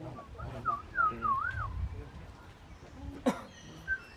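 A high whistle wavering up and down in pitch in a few short phrases, with faint low voices under it at the start. A single sharp squeak about three seconds in.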